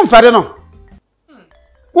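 A man speaking animatedly breaks off about half a second in. After a near-silent pause of about a second, his speech starts again at the very end.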